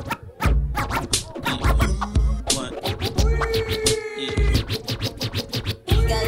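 DJ scratching a vinyl record on a turntable over a bass-heavy hip hop beat, with quick sharp scratch strokes cutting through the music.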